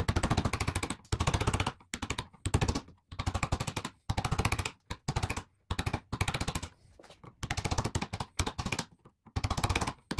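A flat wood chisel paring Cuban mahogany at a bass neck's headstock transition, in about a dozen quick strokes. Each stroke is a rapid chattering scrape as the edge cuts across the grain and lifts curled shavings.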